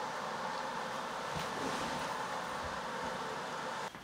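Steady, even hiss of room tone with no distinct events.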